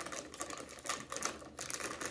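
A plastic snack bag crinkling and crackling in quick irregular bursts as it is tugged and pulled at the top, failing to tear open.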